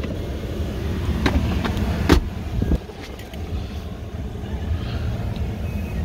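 Plastic clicks and knocks from a pickup's center-console storage tray and lid being handled, the loudest about two seconds in, over a steady low cabin hum.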